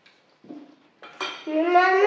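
Faint clinks of cutlery and dishes, then, a little past halfway, a loud wordless voice starts: one long held sound that slides up and down in pitch.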